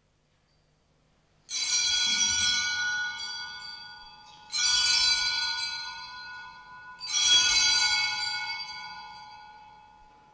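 Altar bells, a cluster of small Sanctus bells, rung three times about three seconds apart, each ring fading out slowly. They mark the priest raising the monstrance to bless the people with the Blessed Sacrament at Benediction.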